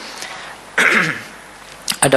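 A man clears his throat once, a short rough sound about a second in, with a small click near the end.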